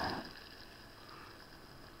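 Compact propane canister stove burner hissing, dying away within the first half second as its valve is turned off, leaving faint room tone.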